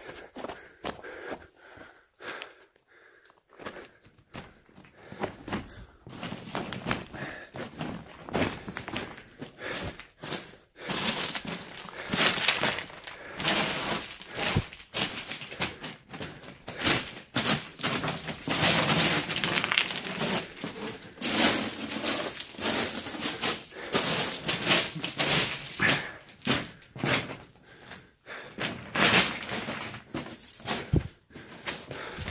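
Footsteps crunching and scraping over loose broken rock, stones clattering and shifting underfoot. It is quieter for the first few seconds, then becomes a steady run of crunching.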